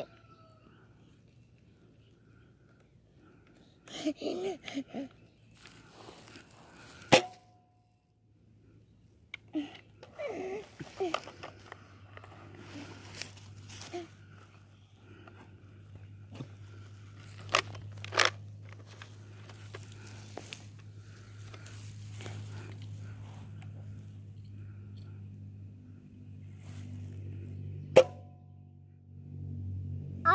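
Nerf Rival toy blaster fired twice, each shot a single sharp snap, about twenty seconds apart, with rustling and small clicks of handling in between.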